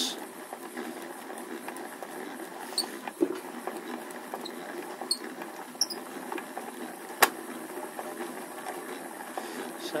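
Hand-cranked plastic yarn ball winder turning steadily as spun wool winds onto it, a continuous whirr with a few short, high squeaks. One sharp click about seven seconds in.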